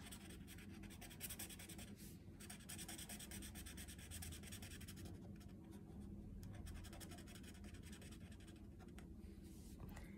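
Thin black felt-tip marker scratching faintly on paper in quick, steady back-and-forth strokes while a small area is filled in.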